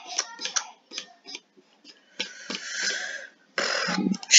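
Computer mouse and keyboard clicks, scattered and irregular, while browsing a music program's menus. About two seconds in there is a longer hiss lasting about a second, and a short noisy burst near the end.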